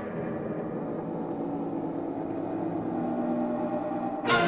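Film score drone: low, sustained held tones with a grainy texture, slowly swelling in loudness.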